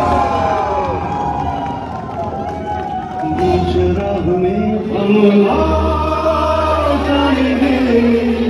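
Live concert music through a PA, heard from within the audience: voices singing with the crowd joining in and cheering. About five and a half seconds in a steady low bass note enters under long held vocal notes.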